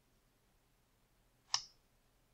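A single computer mouse click about one and a half seconds in, with near silence around it.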